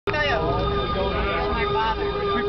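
Several people chatting and talking over one another at a table, with a steady hum underneath.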